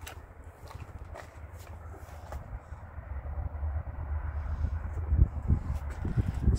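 Uneven low rumble of wind buffeting the microphone, growing stronger near the end, with a few faint clicks.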